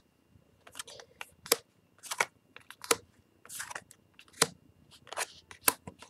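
Yu-Gi-Oh trading cards handled and flicked through by hand: a run of irregular sharp card snaps, roughly one every half second to second, with a brief rustle of sliding cards a little past halfway.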